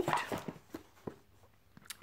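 Light handling of a kraft cardboard kit box on the desk: a few faint clicks and taps, with one sharper click near the end.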